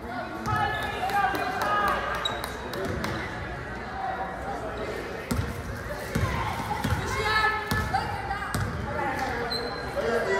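Basketball bouncing on a hardwood gym floor, a few irregular thuds, more of them in the second half, echoing in the large hall. Voices shout and call out over the bounces.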